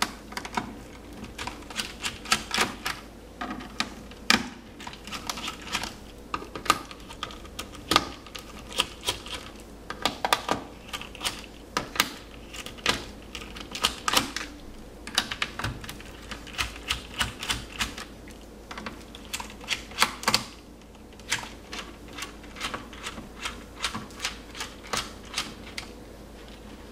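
A small screwdriver working the screws out of a Toshiba Satellite L645D laptop's bottom case, making irregular runs of light, sharp clicks and ticks.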